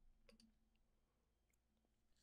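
Near silence: faint room tone, with a few soft clicks in the first half second.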